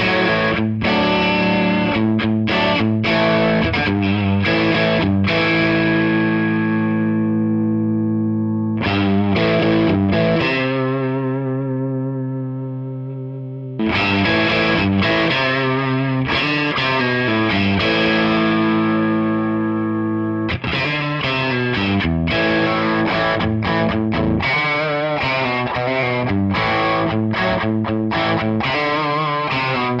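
Electric guitar played with overdrive through a Fender Hot Rod Deluxe III tube combo amp: chords and riffs, with two chords left ringing out and fading near the middle, then busier, faster playing in the last third.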